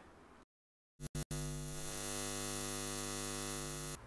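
Steady electrical mains hum with a stack of evenly spaced overtones. It starts about a second in after a moment of dead silence and a couple of brief dropouts, and cuts off suddenly.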